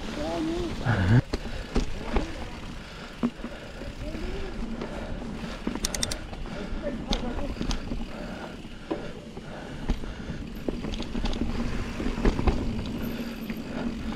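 Mountain bike rolling fast down a dirt and leaf-litter trail: steady tyre and rushing noise with frequent knocks and rattles from the bike over bumps.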